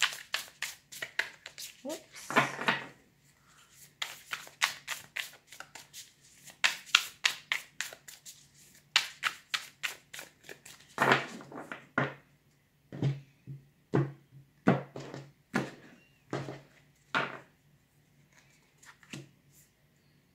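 A tarot deck being hand-shuffled: a rapid run of card flicks and snaps that thins out to separate taps and slaps in the second half.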